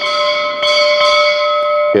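Altar bell rung at the elevation of the chalice during the consecration. It is struck, then struck again about half a second in, and rings on with a bright, clear tone until a voice comes in at the end.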